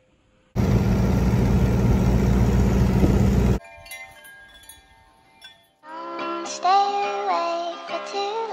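A loud rushing noise that starts and cuts off abruptly, lasting about three seconds. Soft steady chime-like tones follow, and about six seconds in a backing song with a moving melody begins.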